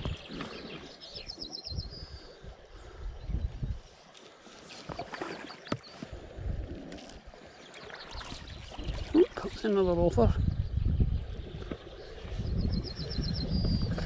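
Wind buffeting the microphone in irregular gusts, with a small bird's short rapid high trill twice, about a second in and near the end.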